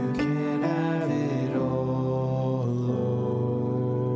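Slow instrumental worship music: acoustic guitar chords over sustained, held tones, the chord changing every second or so.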